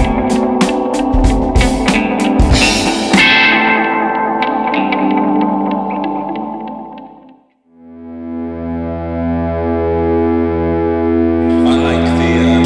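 Electric guitar picked through the Rainger FX Drone Rainger digital delay pedal; the notes and their echo repeats trail off to silence about seven seconds in. Then the pedal's built-in drone tone generator fades in as a steady sustained chord with a slow pulsing wobble.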